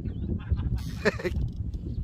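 Wind rumbling on the microphone, with a short breathy hiss about a second in.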